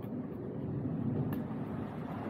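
Steady low rumble of city street traffic, with a faint tick about a second in.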